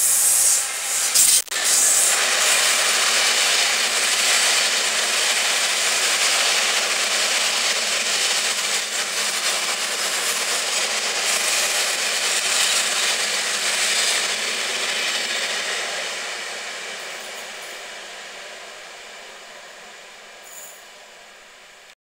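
Freight train passing: a Class 66 diesel locomotive goes by at the start, loudest about a second in, then a rake of JNA wagons rolls past with steady wheel-on-rail noise that fades away over the last several seconds.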